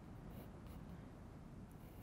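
Faint scratching of a pencil lead drawing lines on paper, a few short strokes.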